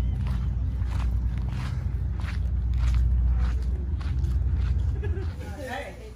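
Footsteps walking on pavement, in a steady series, under a strong low rumble of wind on the microphone; a voice briefly comes in near the end.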